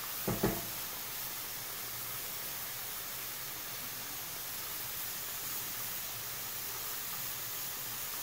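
Soaked, drained rice frying with onion in hot oil in a pot, giving a steady sizzling hiss. Two light knocks about half a second in.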